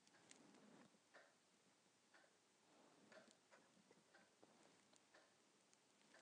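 Near silence: room tone with a few faint, scattered small ticks.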